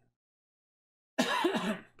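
Silence, then a man coughs once, just over a second in.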